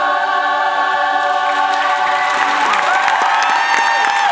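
Choir holding the last chord of a song, then audience applause breaking out about three seconds in, with cheering and whistles rising over it near the end.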